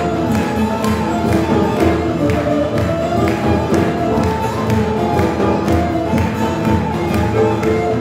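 Turkish folk-music ensemble playing live: bağlamas and bowed kemane and kemençe over a steady percussion beat, in an instrumental passage.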